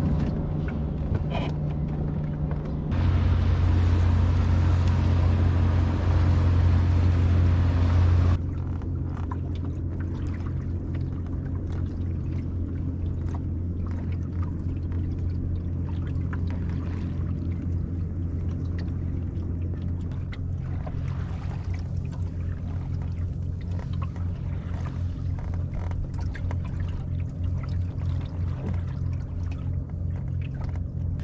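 Water sloshing along the hull of a small wooden sailing dinghy under way, over a steady low rumble. The level jumps up about three seconds in and drops back about eight seconds in.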